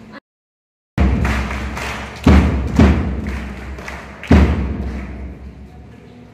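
A brief dropout to silence, then four heavy, dull thuds with a low rumble between them, each fading away slowly.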